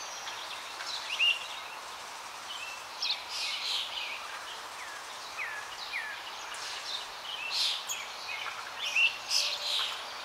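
Birds chirping in the background: scattered short high calls and a few downward-sliding chirps over a steady hiss.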